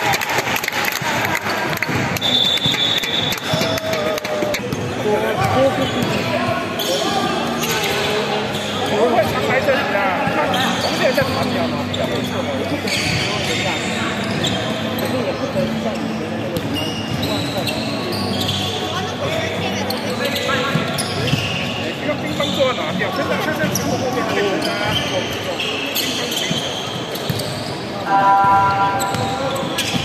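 Basketball game in an echoing sports hall: the ball bouncing on a hardwood court amid footsteps and players' and spectators' voices. A short high squeak comes a couple of seconds in, and a louder held call or tone comes near the end.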